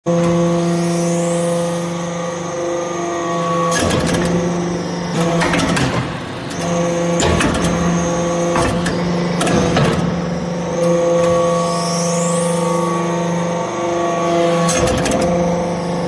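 Metal chip briquetting press running. Its hydraulic power unit gives a steady hum, broken by clusters of knocks and clatter as the press goes through its pressing cycle. The pattern repeats about every 11 seconds.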